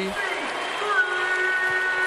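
Arena crowd cheering a made three-pointer, with a long held tone over the noise from about a second in.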